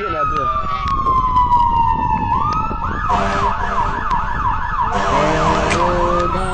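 A siren sounding a slow wail that falls in pitch, then switching about three seconds in to a fast yelp of about four rises a second.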